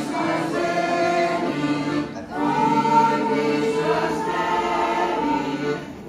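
Women's choir singing a song in sustained phrases, accompanied by an accordion, with a brief break for breath just after two seconds in.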